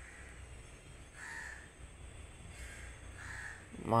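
Two short, faint bird calls in the background, about two seconds apart, over a low steady hum.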